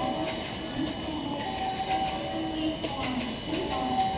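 JR West 321 series electric commuter train approaching and slowing into the station. A voice announcement over the platform loudspeakers runs over it.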